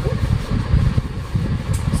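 A loud, low rumble with an uneven flutter, running steadily underneath.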